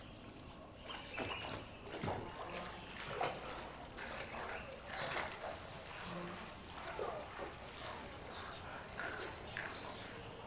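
Outdoor ambience with birds chirping here and there, ending in a quick run of about five high chirps near the end.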